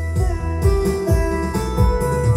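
Karaoke backing track playing its instrumental lead-in before the vocal: held melody notes over a steady beat.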